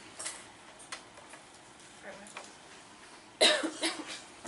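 A single loud cough about three and a half seconds in, after a few seconds of quiet room tone with a few faint clicks.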